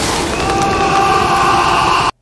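Film sound effect of a lightning bolt striking: a loud, steady rush of noise, with a man's drawn-out scream over it.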